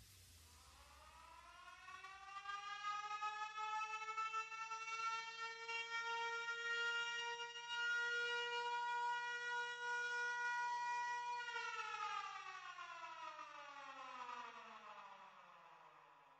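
A siren winds up over about four seconds to a steady pitch, holds it, then winds down steadily from about twelve seconds in.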